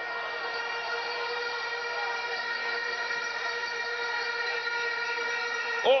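Several horns blown together in one long, steady chord that holds unchanged, over a faint background din.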